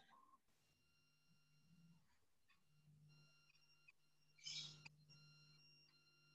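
Near silence: a faint steady electrical hum from an online call's audio, with one brief soft noise about four and a half seconds in.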